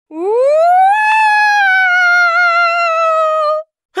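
A voice doing a long ghostly "Woooooooo!" wail. It rises in pitch over the first second, then slowly sinks with a slight waver before cutting off just before the end.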